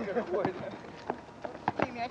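Faint voices of players with several sharp knocks of a basketball bouncing on an asphalt court, recorded on an old VHS camcorder.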